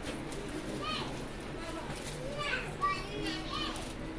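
Indistinct chatter of people in a shop, with several short high-pitched calls or squeals through the middle and end.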